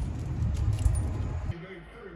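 A low outdoor rumble with a light metallic jingle from a dog's collar tags. It cuts off suddenly about a second and a half in, giving way to a quieter passage with a soft voice.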